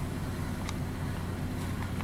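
A 2010 Dodge Charger's 2.7 L V6 idling steadily, fully warmed up and heard from inside the cabin. At this hot idle its oil pressure warning light comes on, a sign of low oil pressure.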